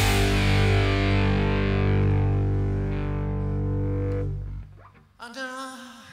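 Rock band's closing chord ringing out on distorted electric guitar and bass, held for about four and a half seconds before it dies away. Near the end a man's voice begins singing alone, with no band behind it.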